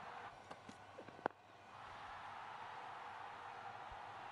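Faint, steady background noise of a cricket ground on a TV broadcast, with one sharp click a little over a second in.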